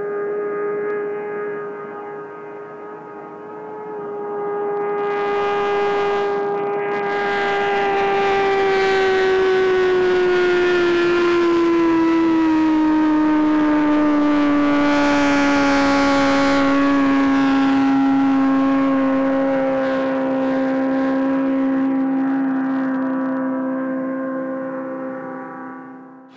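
Motorcycle engine running flat out on a land-speed pass, heard from the side of the course: one steady high note that grows louder as the bike approaches, then drops slowly in pitch as it goes by and fades away.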